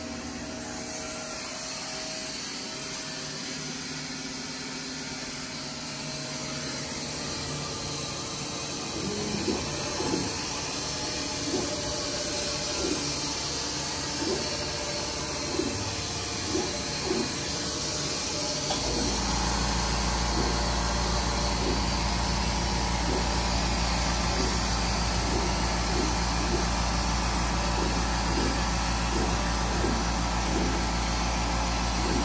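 Steady machine noise from a CO2 laser cutter's support equipment as a job starts: an air compressor and an exhaust fan running, with faint regular blips. A deeper steady hum comes in about two-thirds of the way through.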